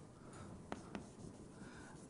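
Faint sound of writing on a lecture board, with two light taps about three quarters of a second and a second in.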